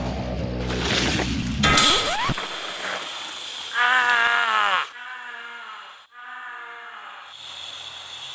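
A man shouts a long cry of dismay about four seconds in, its pitch falling at the end, followed by two fainter drawn-out cries. Before it, a loud rushing noise with a rising whoosh near two seconds in.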